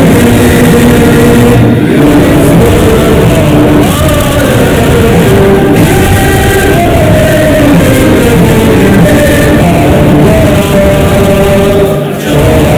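An anthem played loud, with singing in long held notes over a full musical accompaniment.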